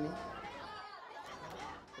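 Faint background chatter of voices from the crowd and pitch, in a pause in the commentary.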